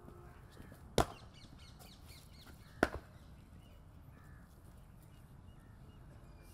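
Two sharp knocks about two seconds apart, the second followed closely by a smaller one, with crows cawing faintly in between.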